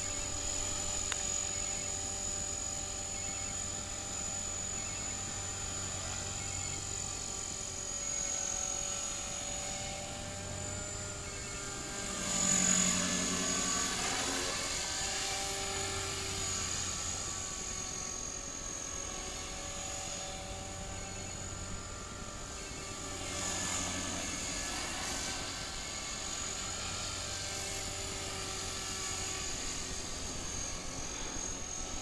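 Radio-controlled model helicopter flying, its rotor blades and motor making a steady high whine. It grows louder and drops in pitch as it passes close about twelve seconds in, and swells again on a second pass a little after twenty seconds.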